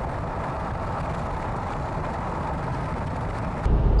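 Steady road noise of a car driving at highway speed.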